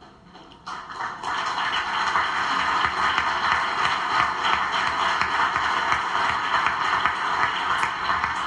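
Audience applauding, starting abruptly about a second in and holding steady.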